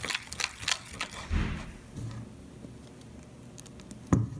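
Metal spoon stirring clear glue and borax activator in a plastic bowl, clicking and scraping against the sides as the mixture thickens into slime. There is a quick run of clicks at first, a dull thump about a second and a half in, then quieter stirring.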